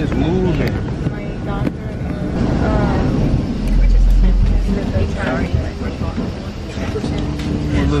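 Airliner cabin noise on the ground: a steady low hum of the running engines, with a brief low rumble about halfway through and a steadier engine tone coming in near the end.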